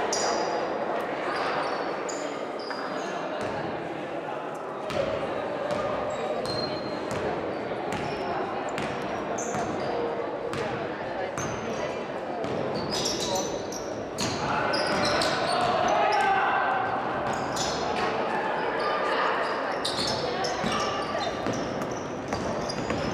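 Basketball game in a sports hall: a ball bouncing on the hardwood court and sneakers squeaking in short bursts, over a steady chatter of players' and spectators' voices.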